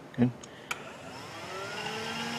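Electric secondary air injection (smog) pump of a 2009 Dodge Avenger starting up when commanded on: a click, then a whine that rises in pitch as the motor spins up. Its switch valve, once stuck closed and now freed by a hammer tap, is open and passing air.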